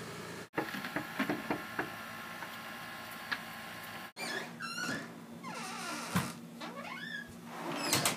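Scattered knocks and taps, then, after about four seconds, a wooden door creaking and squeaking in a run of rising and falling squeals as it is opened.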